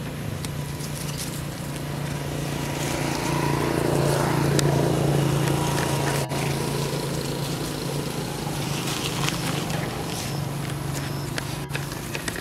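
A motor engine running steadily with a low hum, growing louder through the middle and easing off toward the end.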